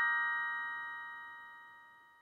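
The last chord of a short bell-like outro chime ringing out, several tones held together and fading steadily until they die away near the end.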